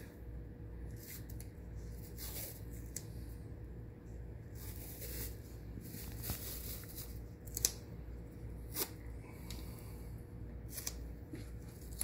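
Rustling and small sharp clicks of medical tape and gauze being handled over a bandaged knee, a scattered run of short sounds over a faint steady hum.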